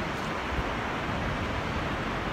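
A steady, even rushing noise outdoors, with no distinct events.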